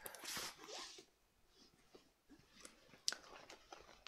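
Faint rustling of a soft quilted leather Chanel clutch being folded over in the hands, with a single sharp click about three seconds in.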